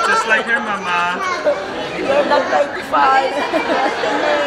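Several people chatting over one another, the hubbub of a group conversation in a large room.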